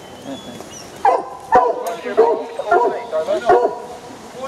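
Foxhounds baying: a run of about six short yelping calls, about half a second apart, starting about a second in. The hounds are marking to ground, giving tongue at an earth where a fox has gone to ground.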